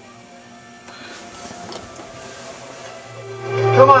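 Television programme sound from the 1967 RCA CTC-28 tube colour TV's speaker. It is low for the first three seconds, then music and a voice saying "come on" swell up near the end.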